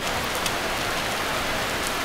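Heavy rain shower pouring onto a wet street: a steady, even hiss with a few sharp drop spatters.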